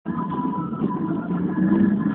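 Car driving at road speed, heard from inside the cabin: a steady mix of engine and road noise.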